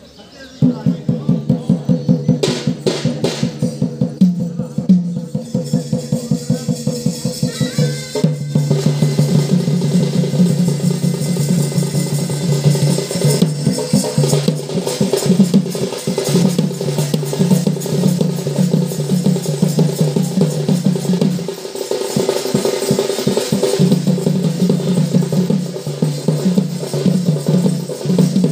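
Folk drumming on barrel drums (dhol) in a fast, dense rhythm, starting about half a second in over a steady pitched drone, for a Danda Nacha dance.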